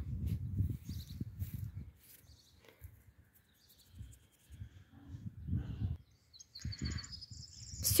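Hands pushing and patting loose garden soil around a cabbage seedling: irregular low, muffled scuffs and rustles, in two spells with a quiet gap between. A short high bird trill comes near the end.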